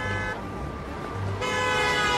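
Car horn honking in street traffic: a short blast that ends about a third of a second in, then a longer, louder blast from about a second and a half in.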